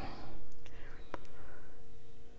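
A woman whispering under her breath as she tries to make out an unfamiliar word she is reading, with a soft click about a second in.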